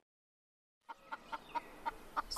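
Silence for about the first half, then faint short clucks from a chicken, about four a second.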